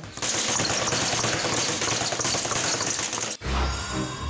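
Boxing speed bag being punched in a fast, continuous rattle of rapid strikes. About three and a half seconds in it cuts off, and a music sting with a deep bass takes over.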